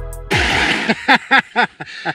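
Background music cuts off shortly after the start, followed by a brief rush of noise and then a person laughing in short, quick bursts.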